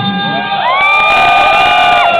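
Live rock concert: an electric guitar note bends up in pitch about half a second in and is held, sustaining loudly, while the crowd cheers.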